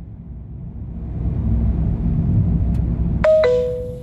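Low rumble of a moving car, swelling and easing, then near the end a two-note descending chime from the car's navigation system, the alert tone that comes before a spoken route prompt.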